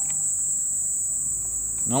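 Crickets trilling in one steady, unbroken high-pitched tone.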